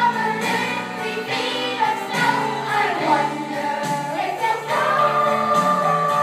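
A song sung by a group of voices over instrumental backing, with a long held high note starting just before the end.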